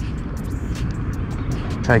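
Steady low rumble with a few faint light ticks over it.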